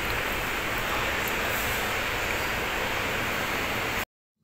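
Steady room background noise: an even, constant hiss with a low rumble underneath, and a couple of faint ticks.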